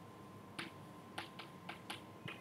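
Chalk tapping and scratching on a blackboard as words are written: about five short, sharp clicks in two seconds, faint, over a thin steady tone.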